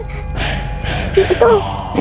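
Low, steady background music drone with a short breathy gasp about half a second in, followed by a brief spoken word.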